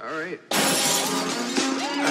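Phonk track with a brief vocal snippet, then about half a second in a sudden loud crash of shattering glass, a sound effect in the mix, with the beat and voices carrying on under it.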